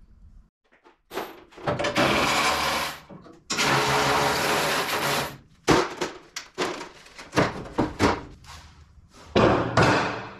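A power tool running in two steady bursts, about a second and about two seconds long, followed by a run of sharp metal knocks and clanks as parts are handled on the truck.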